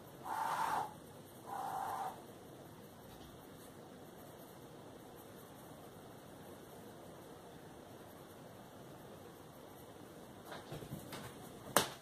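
A house cat meows twice, about a second apart, each call about half a second long. Near the end come a few soft knocks and rustles.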